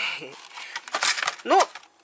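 A plastic food tub being set back among frozen bags and containers in a chest freezer: a few short plastic clicks and a crinkle of packaging about a second in.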